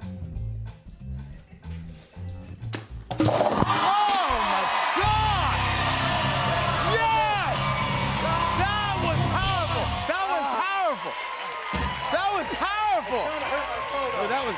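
A kick into a hat of rubber balls, then a sudden loud burst of band music with shouting and cheering, about three seconds in, that runs on through the celebration of a made field goal.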